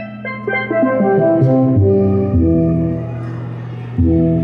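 Laser harp exhibit playing synthesized notes as the laser beams are broken by hand: a run of ringing tones stepping down in pitch over about two seconds, each note overlapping the last, then a new note near the end.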